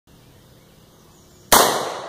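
A single shot from a Colt HBar AR-15 rifle about one and a half seconds in: one sharp crack with an echo dying away over about half a second.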